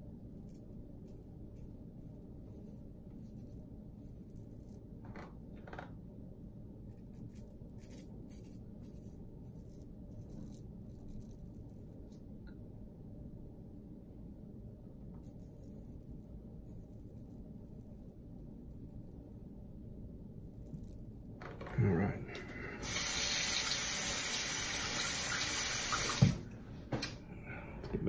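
Water tap running into a bathroom sink for about three seconds near the end, starting and stopping sharply, with a knock just after. Before it, faint scraping strokes of a shavette blade through lathered stubble over a steady low room hum.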